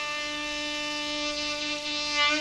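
Tenor saxophone holding one long, steady note in a slow jazz ballad, after a falling phrase, with a faint breathy hiss over the tone.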